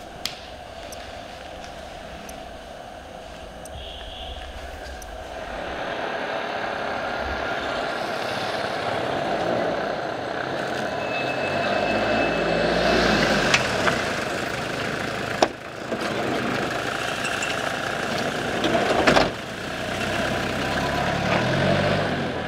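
Road traffic: vehicle engines running and passing by on a street, the noise building from about five seconds in, with a few sharp clicks.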